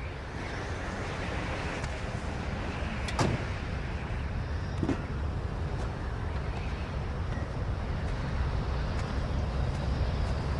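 Steady road and engine rumble of a van heard from inside the cabin while it drives, with a sharp click about three seconds in and a lighter knock about two seconds later.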